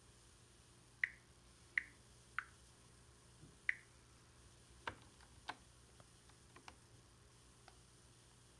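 A few faint, sharp clicks: four ringing ones spaced roughly a second apart in the first four seconds, then several softer ticks.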